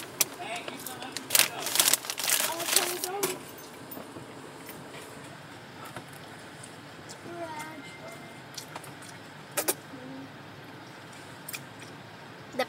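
Indistinct talking with rustling and crinkling in the first few seconds, then quieter; a single sharp click a little before the ten-second mark.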